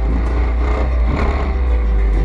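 125cc single-cylinder pit bike engine running steadily, with heavy wind rumble on the bike-mounted camera's microphone.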